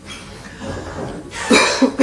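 A man coughing, a short burst of coughs about one and a half seconds in.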